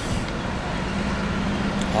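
Road traffic noise, with a vehicle engine's steady low hum that comes in at the start and grows slightly louder.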